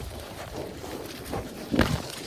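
Two yaks fighting at close range, heads locked: irregular scuffling with short knocks of horns and hooves, the loudest knock near the end.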